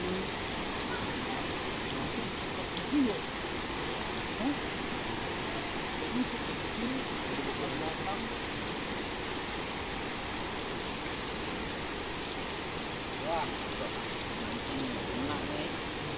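Steady rushing of a flood-swollen river, with a few faint voices now and then.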